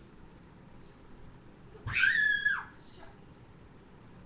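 A child's single high-pitched scream, about two seconds in, held level for under a second and then dropping away.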